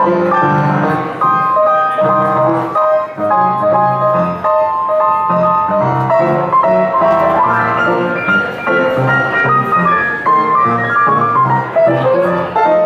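Traditional hot-jazz band playing, with the piano carrying a run of melody notes over a pulsing bass line and steady rhythm section.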